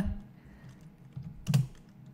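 A single sharp click about one and a half seconds in, with a couple of fainter ticks just before it, typical of a computer mouse button clicking, over quiet room tone.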